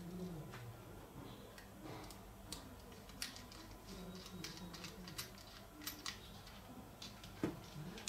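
Faint scattered clicks and light handling noises as a fiber optic patch cord's connector is pulled out of the port on a handheld plastic-cased optical power meter.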